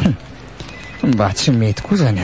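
A voice giving a quick run of short, falling pitched cries without words, starting about a second in, after one brief cry at the very start.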